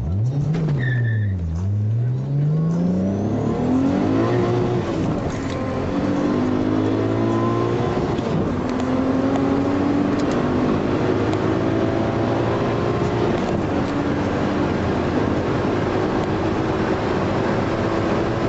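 Turbocharged VW Golf VR6 six-cylinder engine at full throttle, heard from inside the cabin, on a hard acceleration run. The engine note climbs and drops back at each of several gear changes while the car pulls to about 200 km/h.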